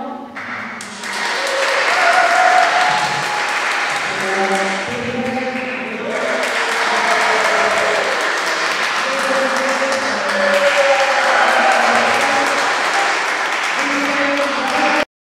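Audience applauding at the end of a song, swelling up about a second in and continuing steadily, with voices calling out over the clapping.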